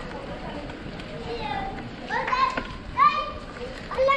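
High-pitched voices calling out: several short calls in the second half, over a low steady background of street noise.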